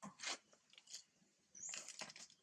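Dry leaf litter crunching and rustling in a few short bursts as macaques shift and move on the ground, with a brief high squeak near the end.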